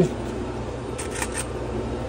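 Steady low background hum of a machine shop, with a few faint light clicks about a second in as small metal parts are handled in a plastic bin.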